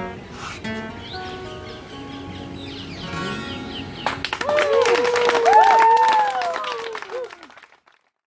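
Acoustic guitar strumming the closing chords of a song, left ringing. About four seconds in, a small audience breaks into clapping and cheering, with a long drawn-out 'whoo', which fades out near the end.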